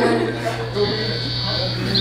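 Steady low electrical buzz from the stage's amplified sound system, heard under people talking, with no music playing.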